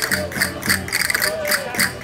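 Live Portuguese folk dance music of a rancho folclórico: a sustained instrument tone carries under a bright, clattering percussion beat that repeats about three times a second.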